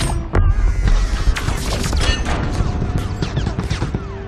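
Film battle sound: rapid gunfire and explosions over a deep, continuous rumble, with a music score underneath.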